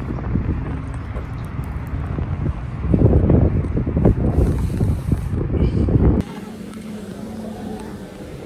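Wind buffeting the phone's microphone outdoors in a car park, gustier from about three seconds in. About six seconds in it cuts off abruptly to a quieter store interior with a steady low hum.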